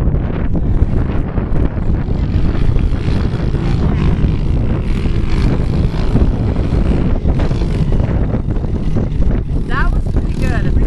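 Pit bike engines running as riders go past the finish flag, with wind on the microphone and people talking in the background.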